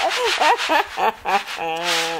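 People talking and laughing, with one voice drawing out a long steady note near the end.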